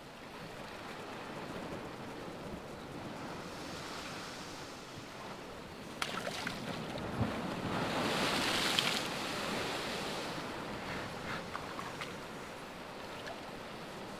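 Ocean surf washing against a rocky shore, building to one wave crashing and spraying against the rocks, loudest about eight seconds in, then easing back.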